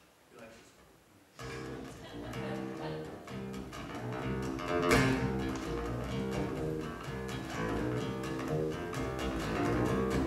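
Acoustic guitar music starts suddenly about a second and a half in: an even, rhythmic picked figure of low notes that grows steadily louder.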